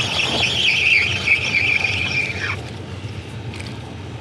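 Spinning reel giving a high, wavering whine while a hooked fish is brought in; it stops about two and a half seconds in.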